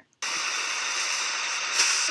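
A steady hiss that starts abruptly about a quarter second in, after a moment of silence.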